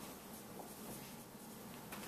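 Dry-erase marker writing on a whiteboard, faint.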